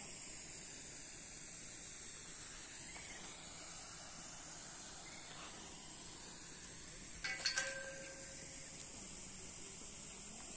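Steady high-pitched drone of insects, an even hiss that does not change. About seven seconds in there is a short clatter of several sharp knocks with a brief ringing note.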